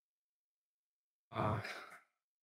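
Silence, then about a second and a half in, a man's short audible sigh that fades out.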